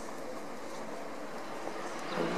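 Steady low background noise of distant city traffic, with no distinct events in it.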